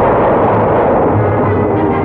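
Explosion of a small RDX charge set against a tree: a loud, steady rush of blast noise that holds level throughout, with music starting to come through faintly near the end.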